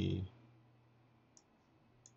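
A man's voice trails off, then near silence broken by one faint, short computer mouse click about one and a half seconds in.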